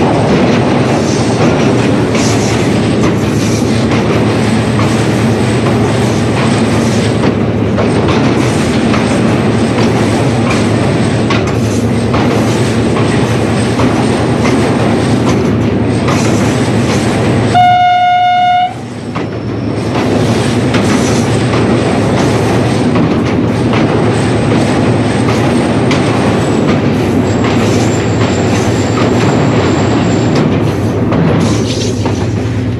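Steady running noise heard from inside the cab of a Pakistan Railways HGMU-30R diesel-electric locomotive, with the wheels clattering over the rails of a steel truss bridge. About 18 seconds in, the locomotive's horn sounds once, a single blast of about a second.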